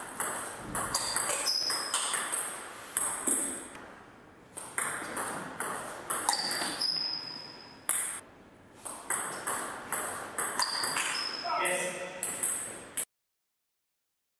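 Table tennis rallies: the ball clicking off the bats and bouncing on the table in quick, uneven succession, with short high squeaks between some strokes. The sound cuts off suddenly about a second before the end.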